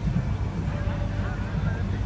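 Low, steady engine rumble from the vehicle under a large flower-parade float moving slowly past, with faint voices of onlookers.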